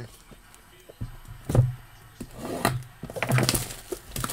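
Cardboard trading-card box being handled and opened by hand: a few separate knocks and scrapes, the loudest about a second and a half in and a cluster near the end.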